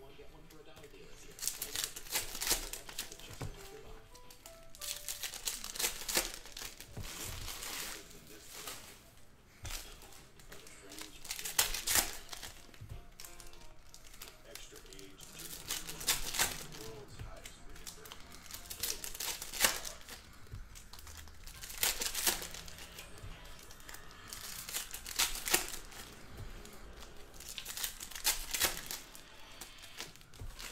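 Trading-card pack wrappers crinkling and tearing as packs of 2019 Panini Donruss football cards are ripped open and handled, in sharp bursts every second or two.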